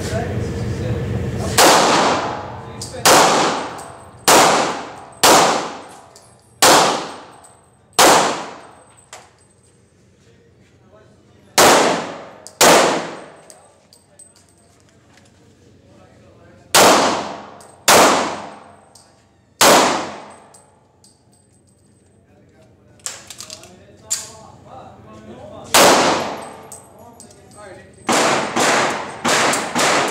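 Handgun shots in an indoor range with concrete-block walls, each sharp crack ringing off the walls. About fifteen shots come in strings: six about a second apart, then a pair, then three, then a quick burst near the end, with pauses between the strings and a few faint clicks in one pause.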